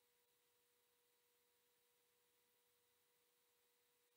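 Near silence, with only a very faint, steady tone in the background.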